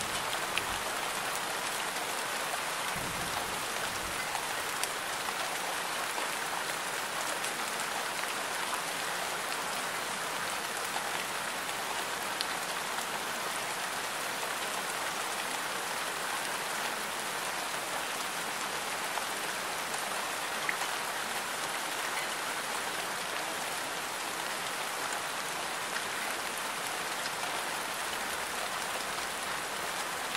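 Steady rain sound, an even hiss with faint scattered drop ticks, used as the masking track laid over subliminal affirmations.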